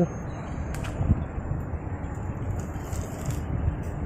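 Low outdoor background noise: a steady rumbling hiss with no clear source, with a faint click under a second in.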